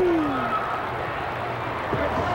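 Arena crowd noise, opened by one drawn-out vocal call that falls in pitch and ends about half a second in.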